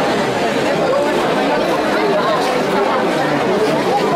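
A dense crowd chattering, many voices talking over one another at a steady level.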